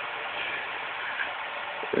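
Steady background hiss: room tone with recording noise and nothing else distinct.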